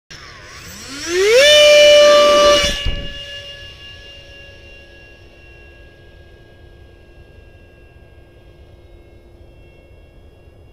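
Electric ducted fan of a 64mm EDF MiG-15 model jet spooling up in a rising whine, then running loud and steady for about a second and a half. A brief thump comes as the loud part cuts off, and after it a fainter whine slowly fades away.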